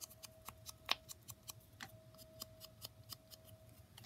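Quick, light taps and clicks of a small ink pad being dabbed around the edges of a paper piece, a few per second and uneven in strength, over a faint steady hum.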